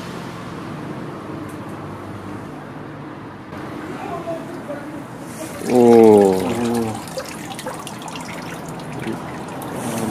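Water sloshing and trickling in a small tub as hands reach in and lift out a dripping lump. About six seconds in, a voice gives a loud drawn-out exclamation that falls in pitch.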